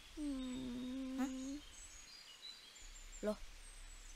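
A young girl's voice making one long, level hum of about a second and a half, a gloomy, sulky sound that prompts the question of what is wrong. Faint high bird chirps sound in the background.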